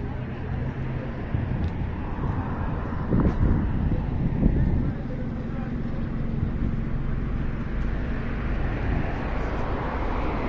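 Street traffic noise heard from a roadside pavement: cars running by with a steady low rumble, louder for a couple of seconds around the middle.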